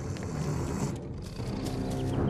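A low rumbling sound effect, with sustained low notes of the cartoon's background score coming in about halfway through.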